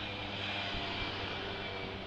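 Steady engine drone with a hiss over it, swelling slightly in the middle, from a distant engine-driven vehicle or aircraft.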